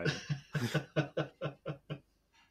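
A man laughing in a run of short, quick bursts, about five a second, that stop suddenly near the end.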